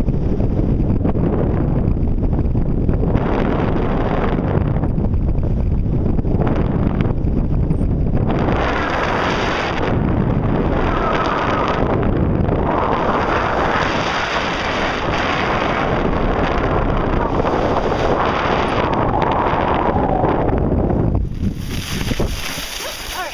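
Wind rushing over the microphone of a harness-mounted camera as a tandem paraglider flies low over grass on its landing approach, a steady buffeting rush that eases off near the end as they come down on the grass.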